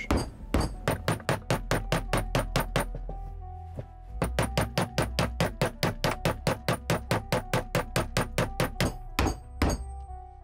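Hammer tapping rapidly on a large steel socket set over a polyurethane control arm bushing, driving the bushing to sit flush in the arm. The strikes come about five a second in two runs, with a short pause about three seconds in and two last blows near the end.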